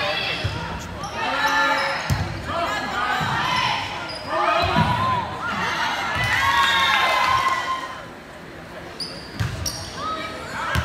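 Volleyball rally: a handful of dull thumps of the ball being hit and landing, under a near-constant stream of overlapping high-pitched girls' voices shouting and calling. The voices drop away briefly near the end.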